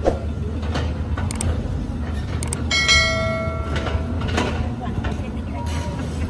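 Diesel engines of a working Caterpillar excavator and a dump truck running with a steady low rumble. A little under three seconds in, a bell-like metallic ring sounds once and fades over about a second.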